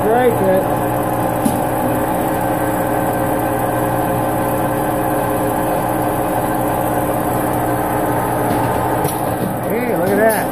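Hardinge AHC lathe running at a steady speed with its spindle turning a thin part: a steady hum made of several held tones. A short pitched sound rises and falls at the very start and again near the end, and there is a single click about a second and a half in.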